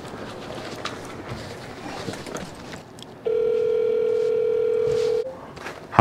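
Apartment building entry intercom call box calling a resident: a few faint clicks, then one steady telephone ringback tone about two seconds long from its speaker.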